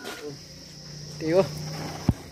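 Steady high-pitched insect buzzing, with a man's brief voiced sound about one and a half seconds in.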